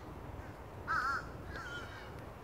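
Fish crow giving its two-note "uh-uh" call about a second in, the second note fainter than the first.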